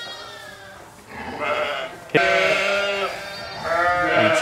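Sheep bleating, several calls overlapping from the flock, the loudest starting about two seconds in and lasting about a second.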